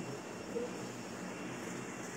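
Steady background hum of a large hall, with no strikes of the bamboo poles.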